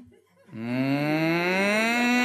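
A man's voice imitating an air-raid siren: a long wail that starts about half a second in, rises steadily in pitch for about a second, then holds on one note.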